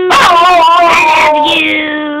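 Wire fox terrier howling and whining in a wavering, sing-song way: an excited greeting. One call begins at once and wobbles up and down, and a second, lower held call starts about one and a half seconds in.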